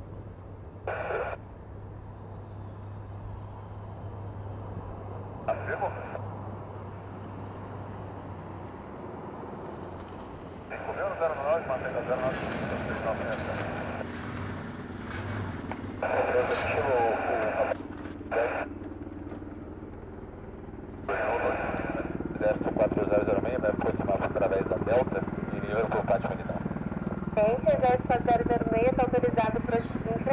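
Eurocopter HM-3 Cougar twin-turbine military helicopter approaching, its rotor and turbine noise getting steadily louder, with a rapid beating of the rotor coming in near the end. Short bursts of air-band radio cut in several times.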